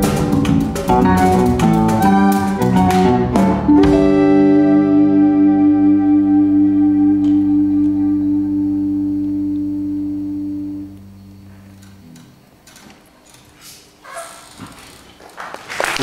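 Small live ensemble of electric guitars, violin and drums playing quick changing notes, then landing on a final chord about four seconds in that is held, pulsing gently, and fades away by about eleven seconds: the end of the piece. Applause starts to rise near the end.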